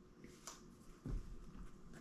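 Faint rustling and crinkling of a small folded paper slip being unsealed and opened by hand, with a soft low thump about a second in.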